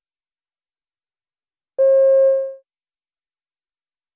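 A single electronic beep, a pitched tone with overtones lasting under a second, cutting in sharply about two seconds in and fading quickly. It is the signal tone that marks the start of a listening-test recording extract.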